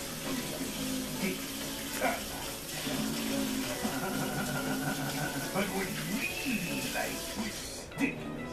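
Cartoon soundtrack playing: indistinct voices and music over a steady hiss, which cuts off suddenly at the very end.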